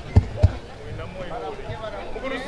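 People's voices in the background, with two short, heavy low thumps in the first half second.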